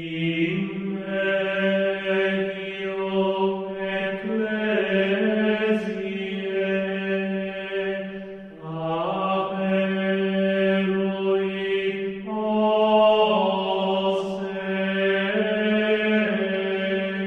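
Slow chant sung by low male voices, long held notes that shift to a new pitch every few seconds.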